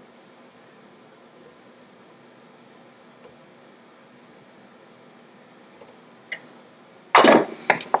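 Quiet room tone with a steady low hum while pliers work a cotter key on a Ford Model T connecting rod, with one faint sharp click about six seconds in. A man's voice starts loudly near the end.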